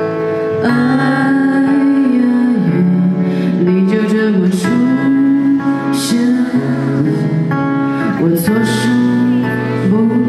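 Live folk-pop song: a voice sings a slow melody in long held notes over strummed acoustic guitar and keyboard, with the band playing along.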